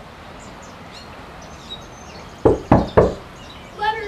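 Three loud, sharp knocks in quick succession, about a quarter second apart, about two and a half seconds in, over faint bird chirps in the background.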